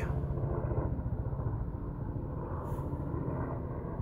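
Helicopter flying past, heard as a low, steady drone.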